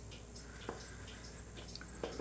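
Faint scratching of a pen tip marking a line across a block of maple burl, with one small tick about two-thirds of a second in, over quiet room tone.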